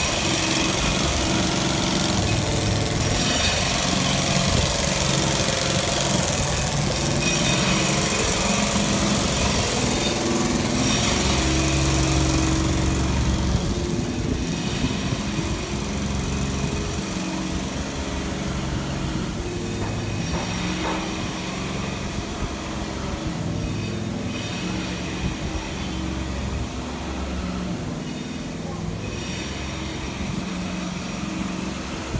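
Motor vehicle engines running in street traffic, with a low engine drone that shifts in pitch. It is loudest in the first half and slowly fades.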